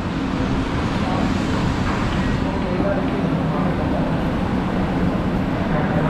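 Steady background roar of a busy coffee-shop food court, with faint chatter from other diners.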